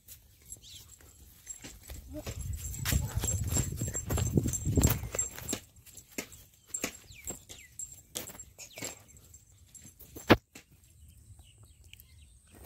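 Footsteps and rustling on a dirt field path: a run of irregular short crunches and clicks, with a low rumble through the middle few seconds and one sharp click near the end.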